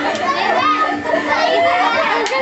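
A group of children shouting and chattering all at once, with high-pitched voices overlapping throughout.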